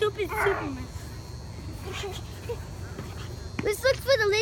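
Short, high-pitched vocal yelps: one falling in pitch at the start, then a burst of several more starting near the end, with little between.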